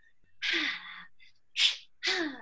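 A woman's breathy, voiced exhale with a falling pitch, followed about a second later by a sharp, gasping in-breath, acted as melodramatic distress.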